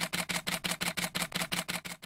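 Camera shutter sound effect firing in rapid burst, like an SLR on continuous shooting, about eight clicks a second, cutting off abruptly at the end.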